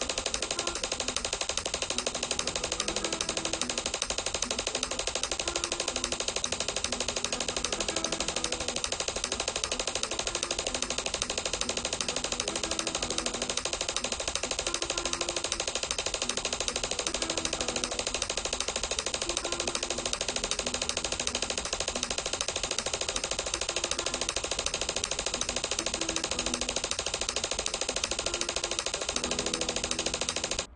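Flamenco guitar played in a fast five-stroke p-i-a-m-i tremolo: a thumb bass note followed by a rapid, even stream of repeated finger-plucked treble notes, the notes changing about every second. It runs at close to 160 beats per minute and speeds up slightly.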